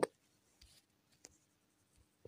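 Quiet room tone with a faint steady hum, broken by two soft clicks, one about half a second in and one just past a second.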